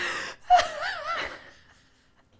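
A woman laughing: a breathy burst, then a high, wavering laugh that dies away about a second and a half in.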